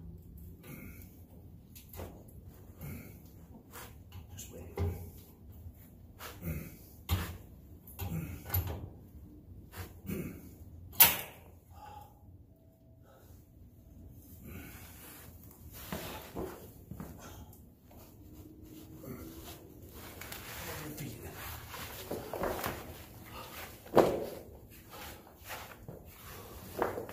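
Irregular clunks and knocks of a boxed lower A-arm being worked and pushed into its mounting points on a Can-Am X3's frame, with a sharp, loud knock about eleven seconds in and another near the end.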